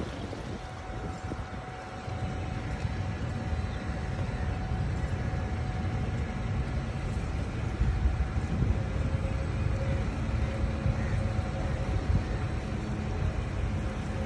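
Abra water taxi underway on a canal: a steady low rumble of the boat and water, with wind buffeting the microphone and a faint steady whine running through it; a second low hum joins near the end.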